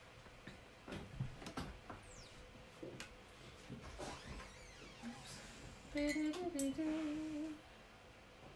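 Scattered light clicks and knocks, then a person humming a few wavering notes for about a second and a half near the end.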